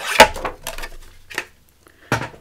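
A sheet of old book paper rustling as it is lifted and moved by hand: a sharp rustle at the start, then a couple of softer ones.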